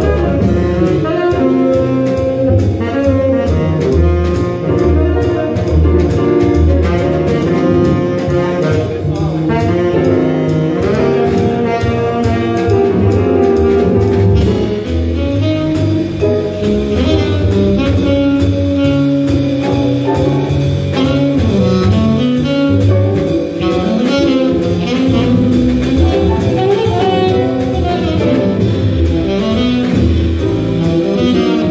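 Small jazz band playing a slow swing tune: horns stating the melody over walking double bass and drum kit with cymbals, with a saxophone taking the lead partway through.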